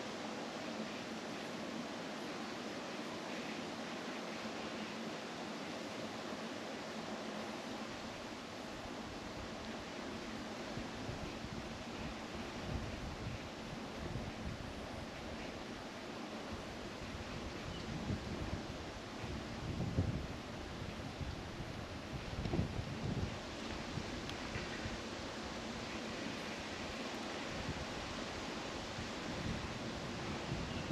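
Steady hiss of background noise, with low gusty rumbles of wind on the microphone from about halfway through, strongest in two gusts near the end of the second third.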